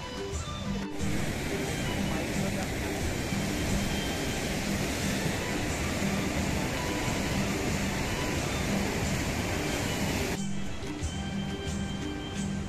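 Background music, with the rushing of a fast mountain river's white-water rapids under it from about a second in; the rushing cuts off suddenly near the end.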